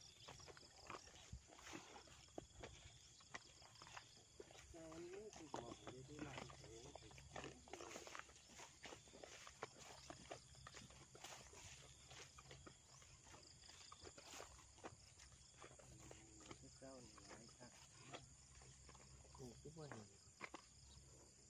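Near silence outdoors: faint footsteps and rustling through tall grass, with faint distant pitched calls twice, about five seconds in and again near the end.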